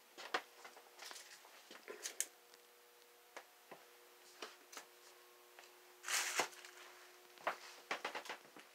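Faint scattered clicks and rustles of handling and movement, with a louder rustle about six seconds in, over a faint steady hum.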